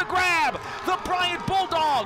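Speech only: a voice talking over the game broadcast.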